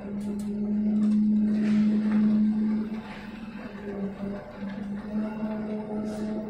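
Truck-mounted concrete pump running as it pumps concrete through its boom: a steady droning hum that swells over the first half and eases off about three seconds in.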